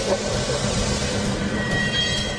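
Cinematic documentary sound design: a steady, dense rushing rumble over a sustained low drone, with a thin high tone coming in near the end.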